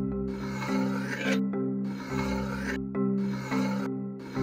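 A metal butter knife slicing and scraping through kinetic sand in three gritty strokes, the first the longest, over background music.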